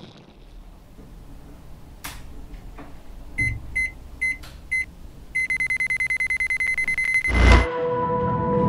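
Digital alarm clock going off: four short high beeps about half a second apart, then a fast run of beeps, cut off by a loud thump near the end.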